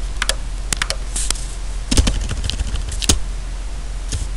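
Computer keyboard typing: irregular key clicks, with a couple of harder strokes about two and three seconds in, over a low steady hum.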